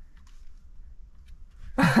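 Faint low rumble with a few soft clicks, then a man bursts out laughing near the end.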